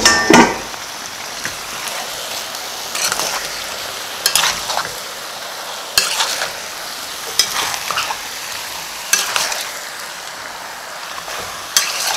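Chicken, tomatoes and garlic sizzling in a stainless steel pot while a metal spoon stirs them, the spoon scraping and knocking against the pot about every second or so.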